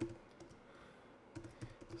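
Faint typing on a computer keyboard: a few key clicks at the start, a pause, then a quick run of clicks near the end.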